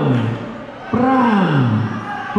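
A man's voice calling out a boxing knockdown count, each number a long shout that falls in pitch, one about every second and a half, with a crowd murmuring underneath.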